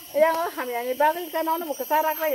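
Speech only: a person talking in a steady run of syllables.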